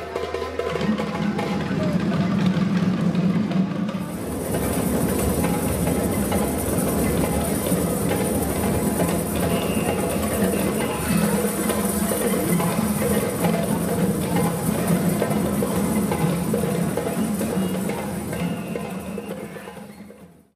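A large group of children playing djembe hand drums together in rhythm, with voices mixed in, echoing in a sports hall. The sound fades out at the very end.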